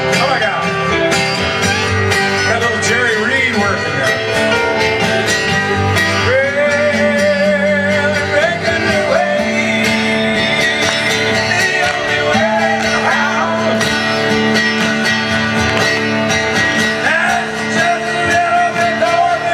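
A live country band playing: strummed acoustic guitar, electric guitar and drums, with a sung melody over them.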